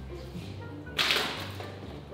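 A single swoosh sound effect about a second in, sudden and fading over about half a second, over quiet background music.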